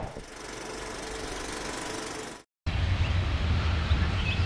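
A faint steady hiss fades out about two and a half seconds in; after a brief cut, a low, fluctuating rumble of wind buffeting the microphone begins.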